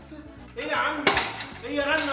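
A single sharp clink about a second in, over backing music with a steady low beat and a man's voice.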